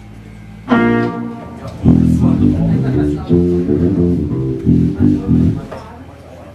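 Amplified electric guitar note struck about a second in and left to ring out, then an electric bass guitar playing a quick run of changing low notes for a few seconds, over a steady amplifier hum: the band checking its instruments before the set.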